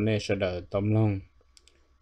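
A man's voice speaking Hmong for about a second, then a pause broken by two faint, quick clicks.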